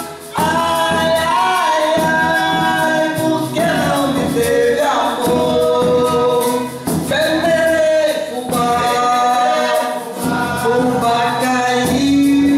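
Live folk song: a woman and a man singing together over a strummed acoustic guitar, a hand-beaten drum and a shaker keeping a steady beat.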